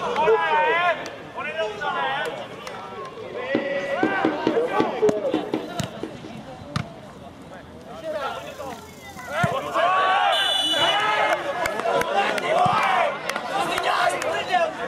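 Players and spectators shouting and calling out across an outdoor football pitch. About ten seconds in, a brief high steady whistle, most likely the referee's.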